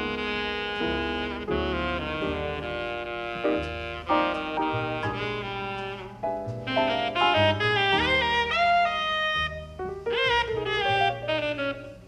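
Tenor saxophone playing a jazz solo, with drums behind it. Long held notes in the first half give way to fast runs with bent notes after about six seconds.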